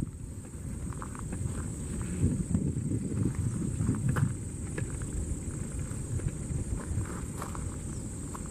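Open-country outdoor ambience: an uneven low rumble on the microphone with a few faint scattered clicks, over a steady thin high-pitched tone.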